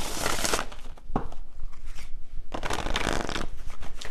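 A tarot deck being shuffled by hand: one spell of shuffling at the start and another a little past the middle, with a single tap between them.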